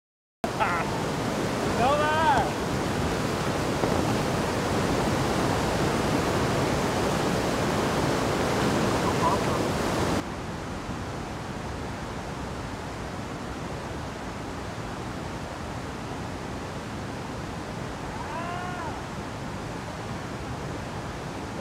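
Whitewater rapids rushing steadily, loud and close for the first half, then dropping suddenly about halfway to a quieter, more distant rush. A voice calls out briefly about two seconds in and again near the end.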